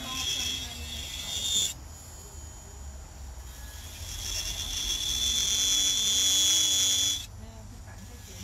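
Electric nail file (e-file) with a metal bit filing a nail: a high-pitched whine with a grinding hiss. It stops after a couple of seconds, starts again about halfway through, louder, and cuts off near the end.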